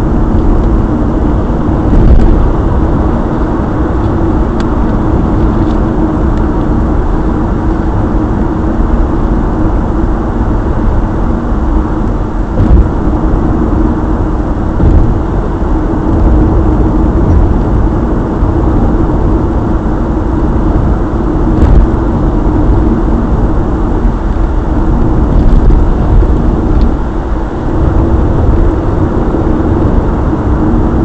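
A car driving, heard from inside the cabin through a dash cam's microphone: a steady low rumble of engine and road noise, with a few faint clicks.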